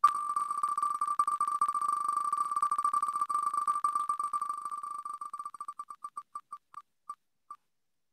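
Wheel of Names web spinner's tick sound effect: a rapid run of short, same-pitched clicks as the virtual wheel spins, slowing steadily as it winds down, until the last few ticks come about half a second apart near the end.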